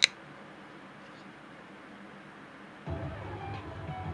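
A single sharp metallic click as the Strider SNG folding knife's blade snaps open and its frame lock engages. Then soft handling noise begins about three seconds in.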